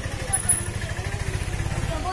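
A vehicle engine idling, a low, steady rumble, with faint voices over it.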